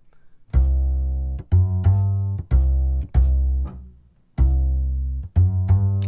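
Sampled acoustic upright bass from the UJAM Virtual Bassist Mellow plugin playing a plucked bass line on C. It is a run of notes, each ringing down, with a short break a little past the middle before the line starts again.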